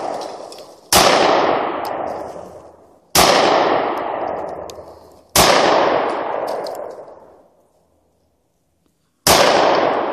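Four gunshots, each a sharp crack followed by a long fading echo through the woods. The first three come about two seconds apart, and the last follows after a longer pause.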